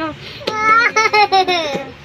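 A child laughing in a quick run of short high-pitched "ha-ha" laughs that fall in pitch, starting about half a second in and dying away near the end.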